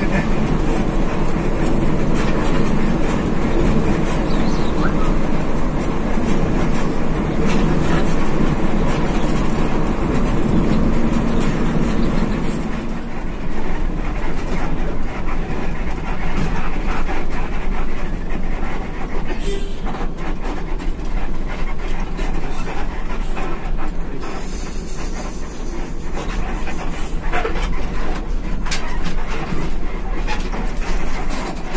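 Cabin noise of an intercity executive coach on the move: a steady engine and road rumble with frequent rattles and knocks from the bodywork. The low rumble eases a little about halfway through.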